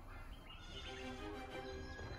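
Quiet background music with held, slowly changing notes, over a low rumble.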